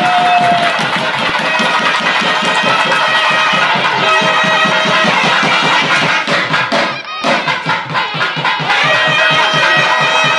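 Traditional South Indian wedding music: a held reed-pipe melody over fast, dense drumming, the getti melam played as the thali is tied. It drops out briefly about seven seconds in.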